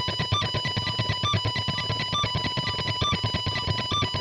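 Electric guitar tremolo picked at high speed: straight sixteenth notes on a single high note at the 19th fret of the high E string, with a brief higher note at the 22nd fret coming in roughly once a second.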